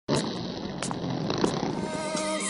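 Small pit bike engine running with a high, nasal buzz that starts suddenly, broken by a few sharp ticks.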